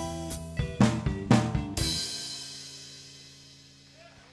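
Electric rock band of guitars, bass and drum kit hitting the closing accents of a song: three hard hits together with the drums, the last with a cymbal crash about two seconds in. The final chord then rings out and fades away.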